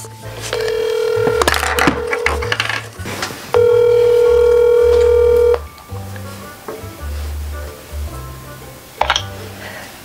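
A phone call ringing out over a speakerphone: a steady ringing tone, once about half a second in and again, louder, for about two seconds from about three and a half seconds in. Background music with low bass notes runs underneath.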